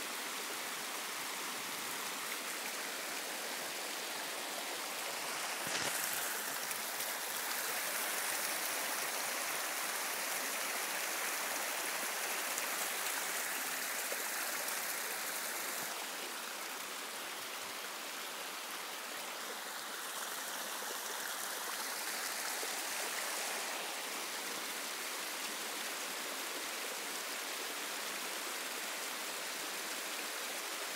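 Steady rush of running water, like a stream flowing, swelling slightly about six seconds in and easing a little in the middle.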